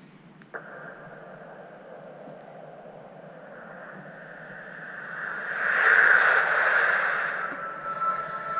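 Film trailer sound design: a rushing hiss starts suddenly, slowly swells to a loud peak about six seconds in, then dies away.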